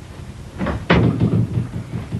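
A door being shut: a light knock about half a second in, then a louder sharp impact with a short low rumble after it.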